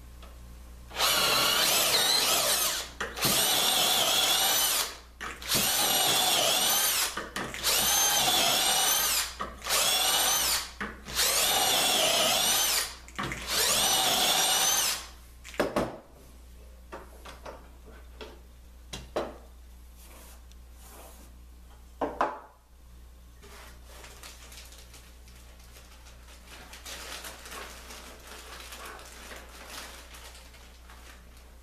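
Cordless drill running a 3/8-inch bit through a Dowelmax jig's guide bushings into an oak board, in a series of bursts whose pitch wavers under load over about fourteen seconds, then it stops. After that come a few light clicks and knocks.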